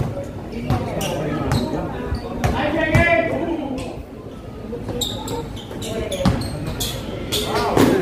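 Basketball dribbled on a concrete court, bouncing repeatedly at uneven intervals, with voices calling out about three seconds in and again near the end, all echoing under a metal roof.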